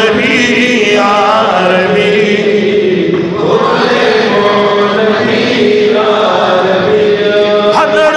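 Men chanting a Pashto naat without instruments, in long wavering held notes, sung into microphones.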